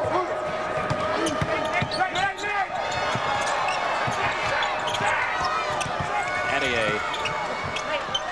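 Sounds of college basketball play on a hardwood court: sneakers squeaking in many short chirps as players cut and shuffle, and a basketball being dribbled, over a steady background of arena noise.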